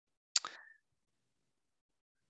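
A single short click with a brief fading tail, about a third of a second in, then near silence.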